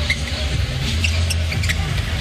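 Basketball sneakers squeaking in short chirps on a hardwood court over a steady arena crowd din with a low rumble.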